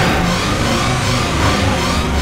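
A car engine revving, with background music.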